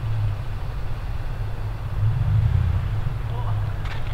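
Truck engine running, a low steady rumble.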